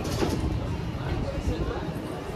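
Busy pedestrian street ambience: indistinct chatter of passers-by over a low steady city rumble, with scattered footsteps.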